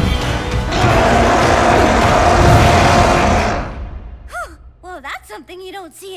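Loud, dense wash of cartoon sound effects and music that fades out after about three and a half seconds. It is followed by several short wordless vocal exclamations with sliding pitch over a faint low held note.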